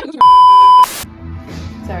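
A single loud, steady electronic bleep at one pitch, lasting about two-thirds of a second: a censor bleep edited into the soundtrack. Background music with a low bass line follows it.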